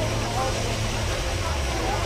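Busy street-market ambience: a steady low rumble and hiss with indistinct voices.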